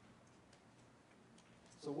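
Near silence: room tone with a few faint clicks, then a man's voice starts right at the end.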